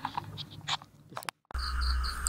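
A few light clicks and taps of plastic being handled, then a brief dropout. After it, insects chirp in a fast, even repeating pattern over a steady low rumble.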